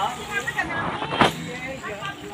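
People talking, with a single sharp knock a little over a second in.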